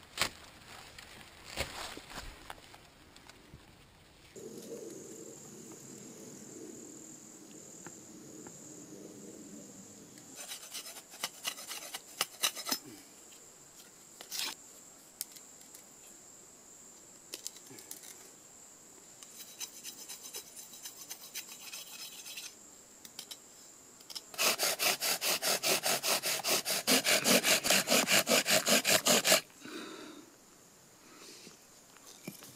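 Bow drill friction fire-making: a wooden spindle driven back and forth in a fire board with fast, even, rhythmic grinding strokes. This is the loudest part, lasting about five seconds near the end and stopping suddenly. Earlier come quieter scattered scraping strokes of a knife carving wood.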